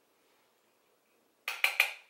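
Three quick, sharp clinking taps about a sixth of a second apart near the end: a makeup brush knocked against a hard blush compact.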